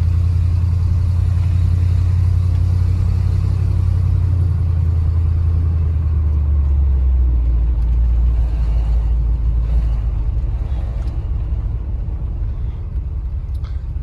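Engine and drivetrain rumble of a 1974 Ford F-250 pickup heard inside the cab while driving at low speed: a steady deep drone that eases off in the second half as the truck slows toward a stop.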